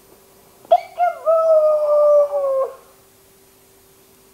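A baby's long vocal call: a short sharp yelp just under a second in, then one held, steady note sliding slightly down in pitch for nearly two seconds before it stops.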